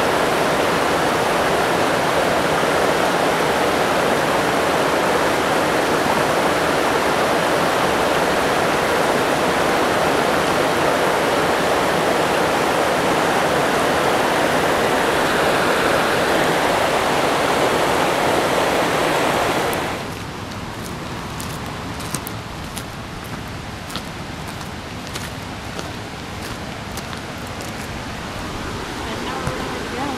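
Shallow mountain river rushing over boulders, a steady loud rush of water. About two-thirds of the way through it drops suddenly to a quieter rush, with scattered light clicks and knocks over it.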